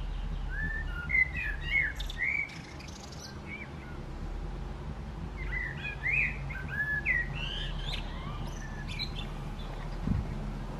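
A small songbird chirping outdoors in two quick runs of short, rapidly rising and falling notes, the first about a second in and the second from about halfway through, over a steady low hum.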